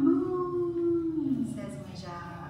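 A human voice holding one long, howl-like note as a vocal sound effect. The note slides down in pitch and stops about a second and a half in.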